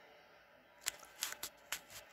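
Handling noise from the camera being moved down over the table: about half a dozen light clicks and taps, starting about a second in after a near-silent moment.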